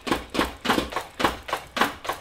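A drum kit being played in a steady beat, about three hits a second, each hit with a low thump.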